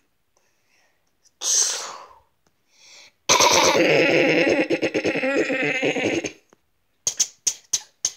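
Mouth-made gunfire sound effects: a short hissing burst, then a long rattling burst of rapid pulses lasting about three seconds, like machine-gun fire, and a quick string of sharp clicks near the end.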